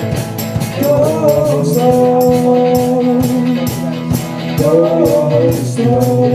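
Live rock band music: electric guitars and bass holding chords over a drum kit's steady beat, with regular cymbal hits.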